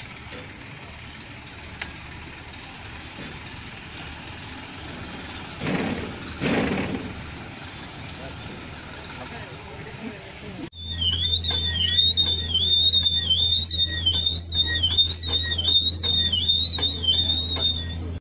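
Steady background noise with two brief voices, then, after an abrupt change about eleven seconds in, a loud high-pitched electronic tone that warbles rapidly up and down over a steady low hum.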